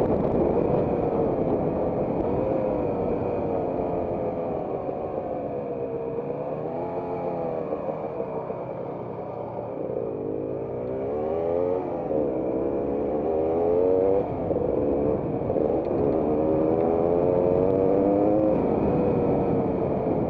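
Off-road trail motorcycle engine running under the rider as the bike travels along a dirt track. The revs rise and fall repeatedly with the throttle, dip slightly just before halfway, and climb several times in the second half.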